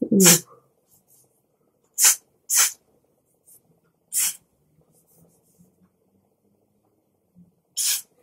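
Got2b glued hair spray, an aerosol can, sprayed in five short hissing bursts onto a wig cap on the head to glue it flat.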